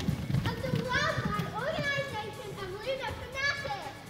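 Several children's high-pitched voices calling out and talking over one another.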